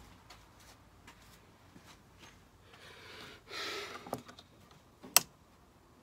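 Screwdriver working a plastic clip on a car's air-intake housing: small scattered clicks and scrapes of plastic, a brief rustle just past halfway, and one sharp click about five seconds in.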